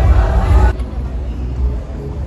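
Busy pedestrian-street ambience of voices over a low rumble, cutting off abruptly under a second in to a quieter street with faint voices and the rumble continuing.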